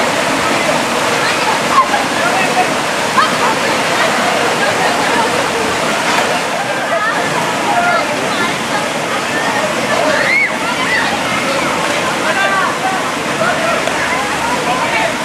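Steady rush of a rocky stream's water, with many women's voices chattering and calling out over it throughout. Two brief sharp sounds stand out in the first few seconds.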